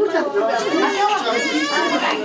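Speech only: several people talking over one another in conversational chatter.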